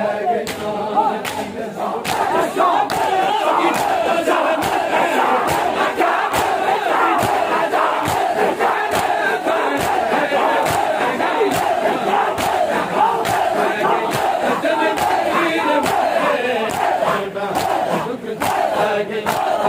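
Large crowd of men chanting a mourning noha together while beating their chests in matam, the open-hand slaps on bare chests landing in a steady, even rhythm under the many voices.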